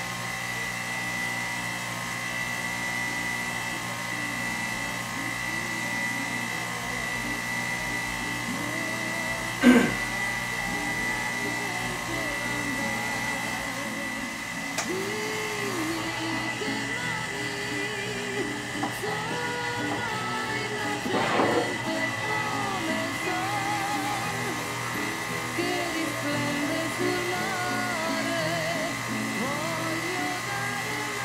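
Electric pump of a Buon Vino tabletop bottle filler running steadily with a high whine as it pumps wine from a carboy through the filler head into a bottle. A sharp knock comes about a third of the way in.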